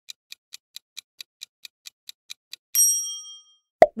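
Quiz countdown-timer sound effect: clock-like ticking, about four or five ticks a second, which stops a little under three seconds in. A bright chime-like ding then rings out and fades. A short, sharp thump comes just before the end.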